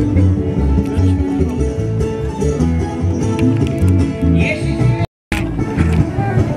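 Live band music with a steady, rhythmic bass beat and sustained tones over it. It cuts out completely for a moment about five seconds in.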